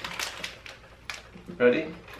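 Jelly beans rattling and clicking inside a small Bean Boozled box as it is handled: a quick run of light clicks for about a second, then a spoken word.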